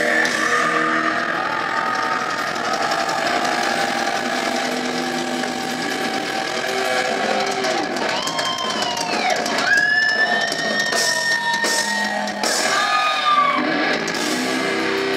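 Live heavy rock band with electric guitars holding long ringing notes, high wailing glides over them from about halfway through, and shouts from the crowd.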